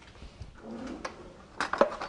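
A few light clicks and knocks of kitchen utensils and cookware being handled, with a louder cluster of clatter about a second and a half in.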